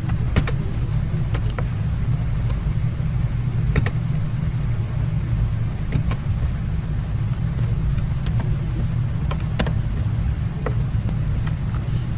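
Steady low background hum, with a handful of short, sharp clicks scattered through it as a command is entered on a computer.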